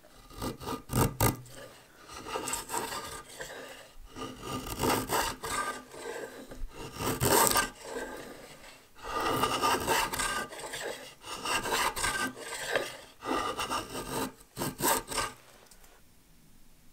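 Freshly sharpened draw knife shaving along a black locust log in a run of irregular scraping strokes, each about a second long. A few sharp clicks come about a second in and again near the end.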